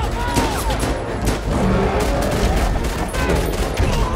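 Movie action soundtrack: rapid handgun shots fired in quick succession, over a film score and a dense bed of crashes.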